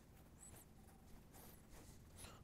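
Near silence, with faint brief scraping as a piston ring is handled and pushed into an engine cylinder bore.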